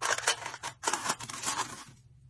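A multi-blade cutter drawn across an aluminium foil lid, its parallel blades slicing through the foil with a scratchy sound in two strokes.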